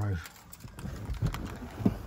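Cabin sound of a 2007 Lincoln Navigator L's 5.4-litre V8 idling with the air conditioning running: a steady low rumble, with a few soft clicks and one sharper knock near the end.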